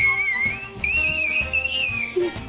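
A young child shrieking with excitement: two long, very high-pitched, wavering screams, the second starting just under a second in, with faint background music underneath.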